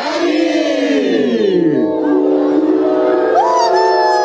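A crowd shouting together for about two seconds. Then music comes in through loudspeakers, holding long sustained chords.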